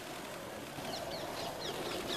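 Small birds chirping: quick, high, downward-sliding chirps, several a second, starting about a second in, over a steady background hiss.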